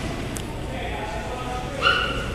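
A toddler's brief, high-pitched squeal near the end, over faint talk in the room.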